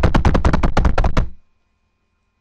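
A fast drumroll of about ten sharp hits a second, louder than the talking around it. It stops abruptly about a second and a half in, as a build-up to a shout-out announcement.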